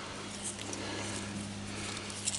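Faint handling of a nylon strap being pushed over screws in a stainless steel bracket, with a few light clicks, over a steady low hum.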